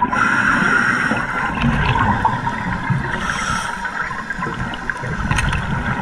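Underwater ambience picked up by a diving camera in its housing: a steady, muffled rushing noise of the water around a scuba diver.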